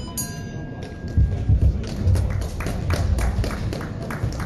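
Boxing ring bell struck once, ringing out for about a second to mark the end of a round. Low thuds follow, then scattered light taps.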